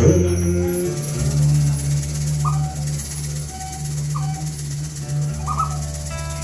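Instrumental passage from an acoustic guitar and hand-percussion duo: a struck chord at the start rings on as sustained low notes, with a rattle and three short high chirps during the second half.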